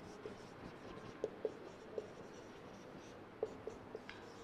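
Felt-tip marker writing on a whiteboard: about half a dozen short, faint squeaks and rubs of the tip on the board.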